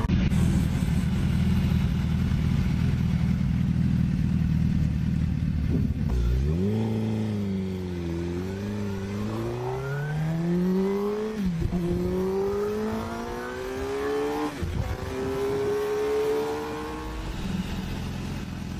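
Sport motorcycle engine: a steady low rumble for about six seconds, then the bike accelerates through several gears, its note climbing and dropping back at each shift.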